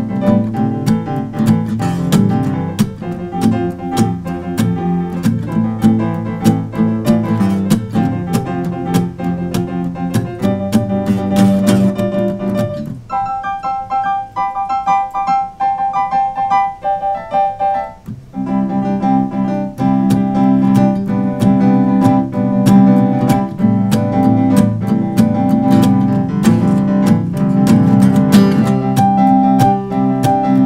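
Instrumental piece played on a Roland digital piano with guitar accompaniment. About 13 seconds in, the low notes drop out for about five seconds, leaving only high notes, before the full texture returns.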